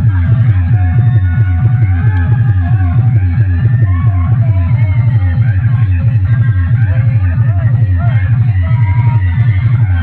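Loud DJ dance remix played through a huge outdoor sound-box speaker stack, driven by a fast, heavy bass beat.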